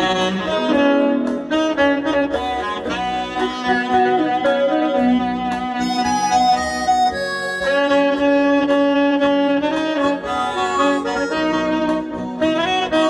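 Alto saxophone playing a melody of held notes over an accompaniment of bass and light drum beats.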